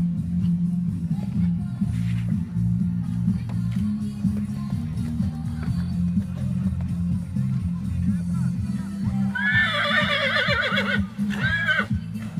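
Background music plays throughout; about three-quarters of the way in, a horse neighs loudly for about a second and a half, with a wavering, falling whinny, then gives a shorter second call near the end.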